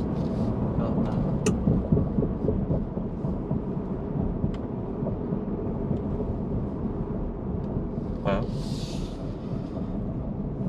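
Engine and road rumble inside the cab of a 2021 Ford F-150 with a Whipple-supercharged 5.0L V8 on the move, a little louder in the first couple of seconds and then steady.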